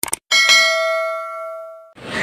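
A quick double mouse click, then a bell chime ringing with several steady tones that fades away over about a second and a half: the notification-bell sound effect of a subscribe-button animation.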